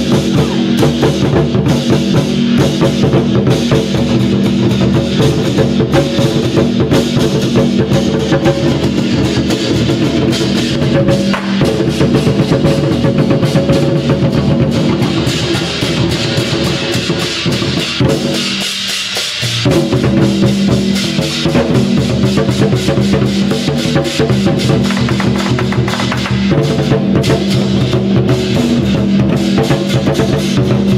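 Large Chinese barrel war drums beaten in fast, dense rhythm by a drum troupe, with hand cymbals clashing over them. The drumming keeps up throughout, except for a short drop in the low drums a little past the middle.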